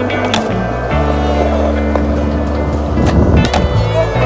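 Skateboard trick on pavement: the board clacks sharply as it lands shortly after the start, and its wheels roll on the hard surface, over background music with a steady bass line.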